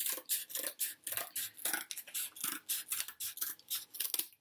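Scissors cutting through thick cardboard in a steady run of short snips, about four a second.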